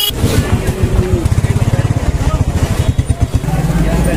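A motorcycle engine running close by, with a loud, rapid low pulse that steadies near the end.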